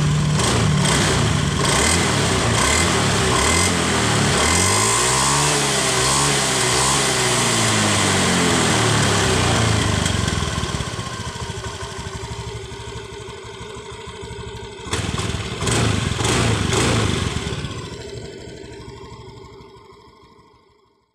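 Honda fuel-injected automatic scooter engine running, now that it starts again after its corroded CKP sensor was cleaned. It revs up once and comes back down, runs quieter, gets louder again for a moment, then dies away near the end.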